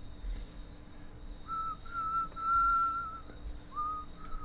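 A person whistling a few steady held notes, starting about a second and a half in, with a short rising note near the end.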